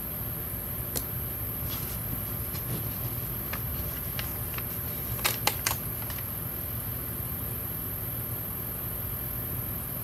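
Scattered light taps and clicks of washi tape strips being laid and pressed onto a spiral planner's paper page, over a steady low hum.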